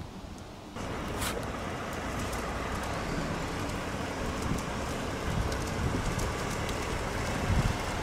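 Street traffic noise with wind buffeting the microphone. It starts abruptly about a second in, and the wind gusts get heavier near the end.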